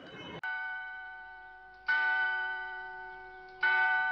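Bell chimes: three struck notes about a second and a half apart, each ringing on and slowly fading, the first one softer.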